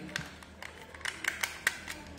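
Plastic housing of a digital multimeter being slowly pulled apart by hand: a string of sharp plastic clicks and light taps.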